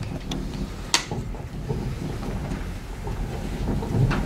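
Low, steady rumble of room and microphone handling noise, with a sharp click about a second in.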